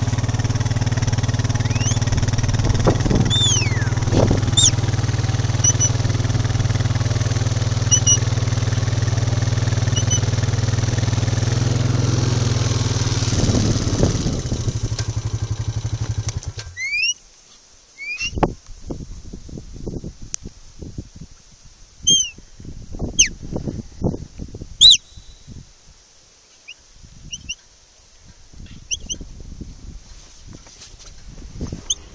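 Quad bike engine running steadily, then switched off about 17 seconds in. Afterwards only short, high rising whistled notes and a few soft low thuds are heard.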